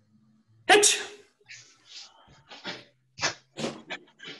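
A loud, sharp forceful exhalation or shout about a second in, followed by a run of short, forceful breaths about every half second, typical of a karateka's sharp breathing through a drill.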